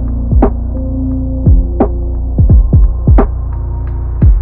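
Lo-fi hip-hop instrumental playing with its highs filtered away, so it sounds muffled: deep kick drums that drop in pitch and snare hits over held bass notes and chords.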